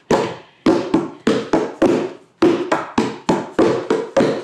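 Bongo-style hand drums struck with bare hands, about three strokes a second in an uneven rhythm: one player keeps a steady beat while the other plays varied patterns over it.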